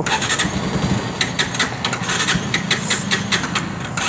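Bajaj Pulsar 125's single-cylinder engine idling steadily, its exhaust note heard from beside the bike.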